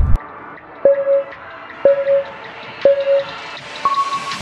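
Workout interval timer counting down: three short beeps one second apart, then one higher-pitched beep signalling the start of the round.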